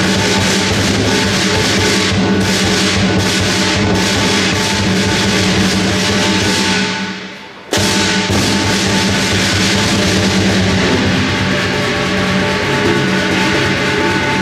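Southern lion dance percussion, a large lion drum with clashing cymbals and gong, playing a dense, driving beat. About seven seconds in it fades away and then starts again abruptly at full strength.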